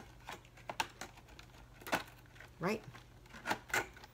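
Scattered light clicks and taps with a little rustling: plastic mechanical pencils and their packaging being handled.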